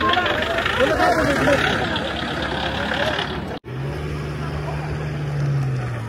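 Voices over a noisy bustle. After a sudden break about three and a half seconds in, a steady low engine hum, as of a motor vehicle running.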